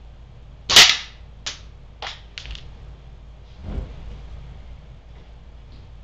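A .177 air gun shot with a Destroyer pellet striking the paper-plate target: one sharp crack, then three lighter clicks over the next two seconds and a duller thump about three seconds in.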